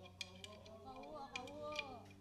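Faint talking among people in a room, with a few light clicks scattered through it.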